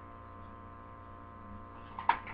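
Steady electrical mains hum: a low buzz with many evenly spaced overtones, unchanging throughout.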